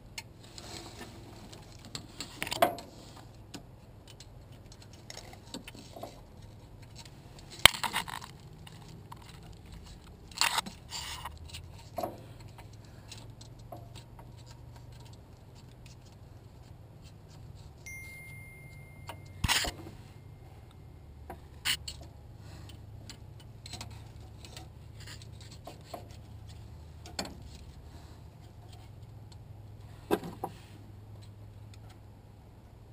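Scattered clinks, taps and scrapes of a thin wire rod and camera cable being worked against the metal of a backhoe's frame and gearbox, with a low steady hum underneath.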